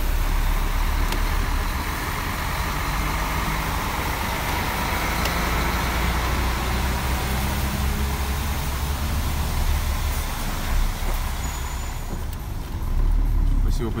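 Truck cab interior on the move: a steady low engine drone with tyre and road noise.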